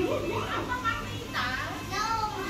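A young child's voice making a few short, high-pitched calls and chatter.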